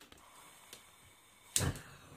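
Gas hob burner being lit under a saucepan: a faint click near the middle, then one loud, sharp pop about one and a half seconds in as the gas catches.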